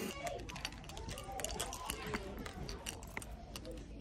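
A bunch of keys on a lanyard jingling with many light metallic clicks while she walks, over faint voices in the background.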